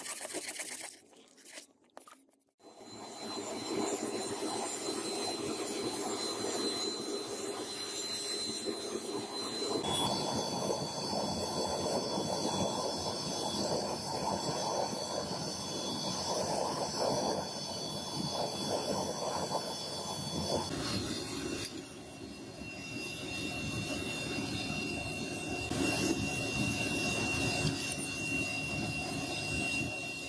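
Handmade forge furnace with its air blower running: a steady rush with a thin high whine over it, while a steel chopper blade heats in it for normalizing. The sound changes abruptly twice, at cuts.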